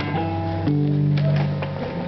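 Telecaster-style electric guitar played live, chords struck and left ringing, with a change to a new chord a little under a second in.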